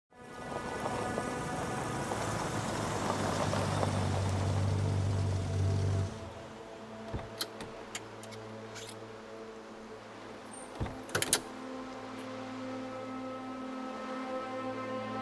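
A car engine running steadily, which cuts off suddenly about six seconds in. It is followed by a series of sharp clicks and knocks from the car doors being opened and shut, the loudest cluster coming near the end, over a sustained drone of film score.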